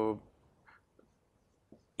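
Marker pen writing on a whiteboard: a few faint, short strokes following the drawn-out end of a spoken 'uh'.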